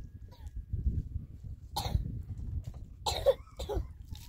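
A person coughing twice, about two seconds in and again near the end, over a steady low rumble.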